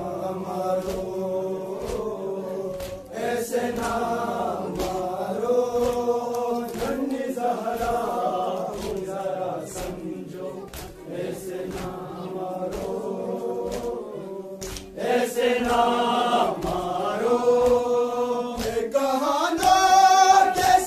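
A group of male mourners chanting a noha in unison, the melody swelling louder with a rising sweep near the end. Under the chant runs a steady beat of hands striking chests (matam).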